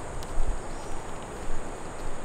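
Footsteps and rustling on a leaf-covered forest trail over a steady outdoor hiss, with low thumps about half a second and a second and a half in.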